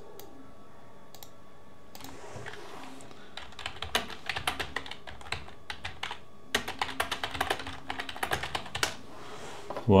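Typing on a computer keyboard: a fast run of keystrokes begins about three seconds in and goes on for several seconds, with a brief pause halfway through.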